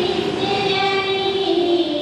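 A group of women singing a devotional prayer song together into a microphone, holding long notes, with the melody stepping down about a second and a half in.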